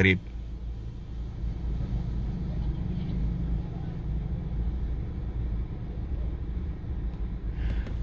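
Steady low rumble of a car idling in stopped traffic, heard from inside the cabin.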